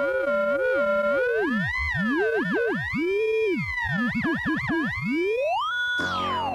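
A steady test tone with warbling electronic tones over it, theremin-like, sliding and wobbling up and down in pitch, in a mock version of TV test bars and tone. Near the end the pitch sweeps upward.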